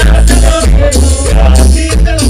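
Loud live band music over stage speakers, with heavy bass and a steady dance beat.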